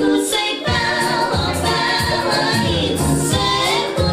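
A song sung by several women in harmony over a band backing, with steady repeated bass notes and a short break in the bass just after the start.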